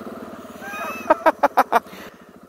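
A 2013 KTM 690 Enduro R's single-cylinder engine running at low speed with a steady, even pulse through a Wings titanium exhaust. In the second second a rider breaks into short bursts of breathy laughter, five quick bursts that are louder than the engine.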